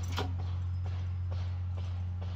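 A steady low machine hum with light knocks repeating about twice a second; the first knock, just after the start, is the loudest.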